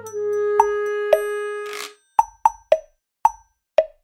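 Edited-in sound effects: a held tone lasting about a second and a half with two clicks on it, then five short pops, the last few spaced about half a second apart.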